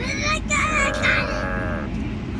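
A young boy's high-pitched, drawn-out vocal sound, held steady through its second half and stopping just before the end. Steady low car-cabin road noise runs underneath.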